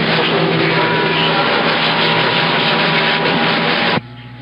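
CB radio receiver full of loud, steady static with garbled, overlapping distant transmissions underneath. A steady whistle comes in about a second in.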